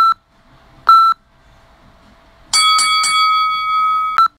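Edited-in electronic sound effect: two short beeps a second apart, then from about two and a half seconds in a bright sustained chime-like tone with a brief shimmer at its start.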